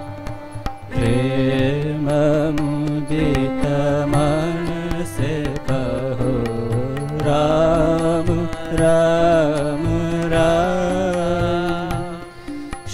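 Male voices singing a devotional bhajan in long, wavering held notes, accompanied by harmonium with a steady drone and regular hand-drum strokes.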